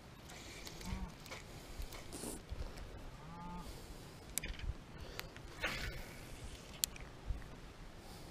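Spinning reel being handled: several sharp clicks from the bail and handle as the line is reeled and cast, from about halfway through. Earlier, two short pitched animal calls sound a couple of seconds apart.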